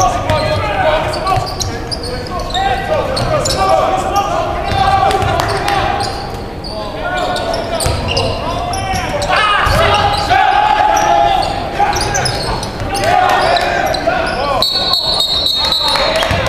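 Basketball bouncing on a hardwood gym floor during play, mixed with players' and spectators' voices echoing in a large hall. A high steady tone comes in near the end.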